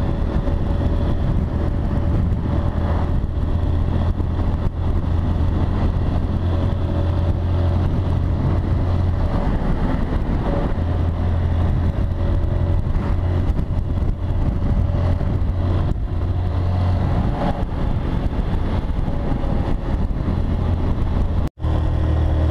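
Motorcycle running steadily at road speed, its engine and road noise heard from the handlebars, with a brief dropout near the end.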